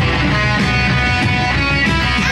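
Electric guitar playing a rock-and-roll chord riff in a punk-rock song, with no singing at this moment.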